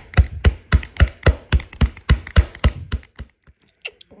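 Foley sound for a squirrel playing basketball: a fast, even run of thumps, about four a second, like a small ball being dribbled quickly. It stops about three seconds in, and a few faint taps follow.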